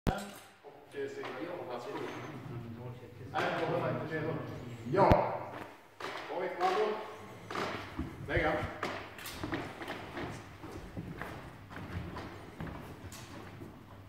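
A man talking in a large hall, with footfalls thudding on a wooden floor and one sharp click about five seconds in.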